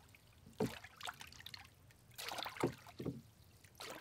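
Oar of a small wooden rowboat dipping and splashing in river water, a few irregular strokes as the boat comes in to the bank.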